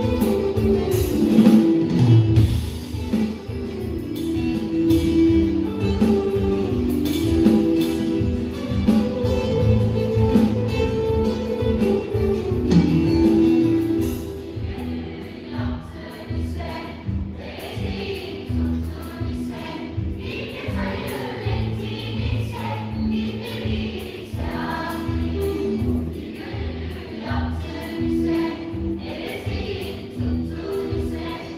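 A school choir singing with a live band. The full band plays under the voices in the first half, then the accompaniment thins to a softer passage from about halfway.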